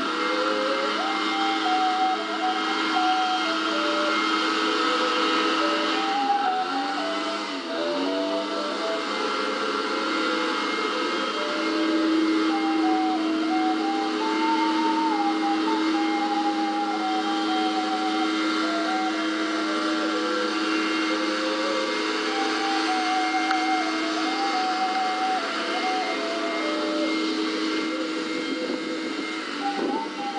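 Ocarina playing a slow melody of clear, held notes that step up and down, over a steady lower held tone and a constant hiss.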